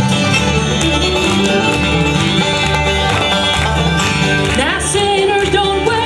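Live bluegrass band playing a gospel song: banjo, fiddle, mandolin, acoustic guitar and upright bass, with the banjo to the fore. A voice comes in near the end.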